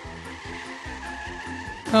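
Background music with a steady beat, over the tyre and road noise of a car on a motorway heard through a dashcam.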